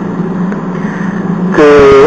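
Steady low hum with a light hiss during a pause in a man's lecture; his voice comes back about a second and a half in.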